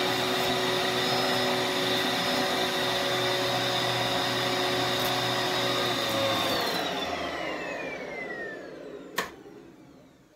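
Eureka bagless upright vacuum running steadily with a high whine, then switched off about six and a half seconds in, its motor winding down with a falling whine. A single sharp click comes near the end.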